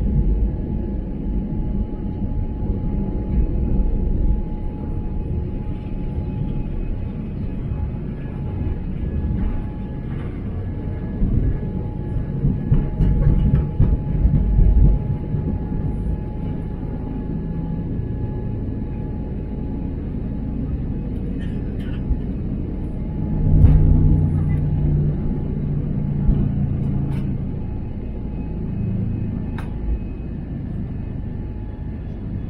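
Cabin noise of an Airbus A320neo on its takeoff roll: its Pratt & Whitney geared turbofan engines at takeoff thrust with a steady whine, over the heavy rumble of the wheels on the runway. The rumble surges about halfway through and again a few seconds before the end, then eases as the aircraft lifts off.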